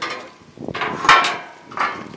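Two sharp metal clanks on a car-hauler trailer, the first about a second in with a brief ring and the second near the end, as tie-down hardware is handled to secure the car.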